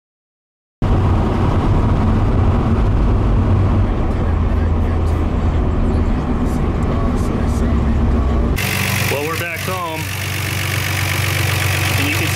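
Nissan Skyline RB26DETT twin-turbo straight-six heard from inside the cabin, cruising at freeway speed with a steady low drone of engine and road noise. About eight and a half seconds in, the sound changes to the engine idling steadily under the open bonnet. The engine runs smoothly now that its mass airflow sensors have been resoldered.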